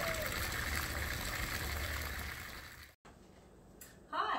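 Water trickling and splashing steadily in a garden birdbath fountain. It fades and cuts off sharply about three-quarters of the way through, leaving a short stretch of quiet room tone.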